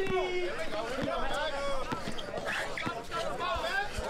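Men's voices calling out on a basketball court, with a basketball being dribbled: several short, irregular thuds under the talk.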